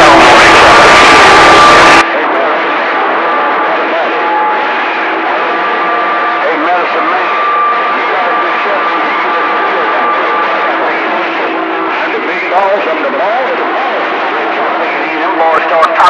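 A loud burst of music cuts off sharply about two seconds in. After it comes CB radio reception: static hiss with steady heterodyne whistles and faint, garbled distant voices breaking through, which grow stronger near the end.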